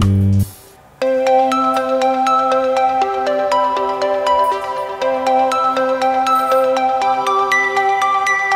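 Background music score: a lower strummed phrase cuts off just after the start. After a brief drop, a light tune of quick, ringing struck notes begins about a second in.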